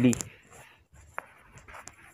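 A man's voice trailing off, then faint small clicks and rustling, with one sharp click about a second and a quarter in.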